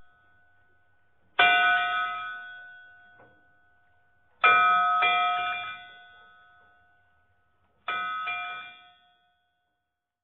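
A bell struck three times, about three seconds apart, each ring fading slowly; the second and third strikes are each followed quickly by a lighter second stroke.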